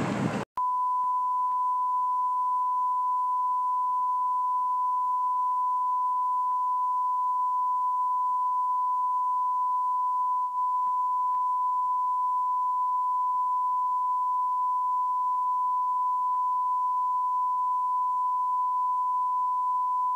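Steady single-pitch test tone of the kind that plays with colour bars, starting about half a second in after a moment of silence and holding at one high pitch without change.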